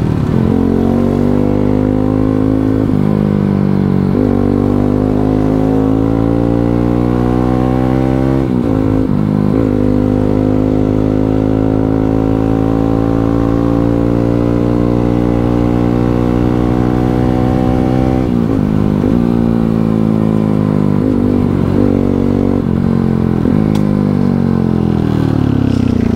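Motorcycle engine and exhaust under way, heard from the rider's seat. The revs climb and drop back sharply several times, with a long, slow rise in the middle, and a few more climbs and drops near the end.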